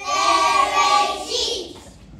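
A group of young children singing out loudly together in unison, a short burst of held notes that begins suddenly and fades out about a second and a half in.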